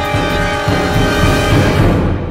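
Orchestral music from a contemporary violin concerto for solo violin and orchestra: sustained chords over heavy low strokes, growing louder to a loud chord near the end.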